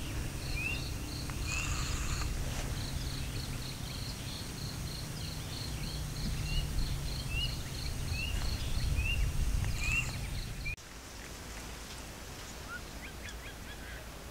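Low, steady rumble of a lava rockfall (guguran) tumbling down Mount Merapi's slope, with birds chirping repeatedly over it; the rumble cuts off abruptly about eleven seconds in.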